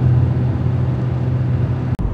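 Steady low drone of a car engine running while the van drives along, used as a driving sound effect.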